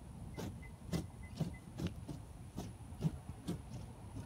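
Wooden nunchaku being swung hard through the air: a series of short, faint whooshes at about two a second.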